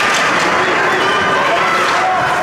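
Ice hockey rink din: spectators shouting and calling out, with skates scraping the ice.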